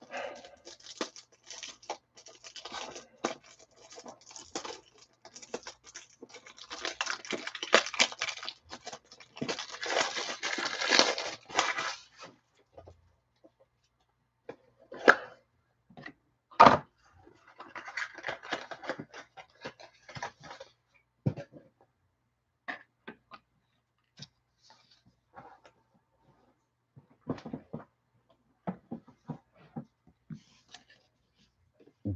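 Plastic card supplies being handled: penny sleeves and rigid top loaders rustling and crinkling as sports cards are slid into them, with a couple of sharp plastic clicks partway through and scattered small clicks near the end.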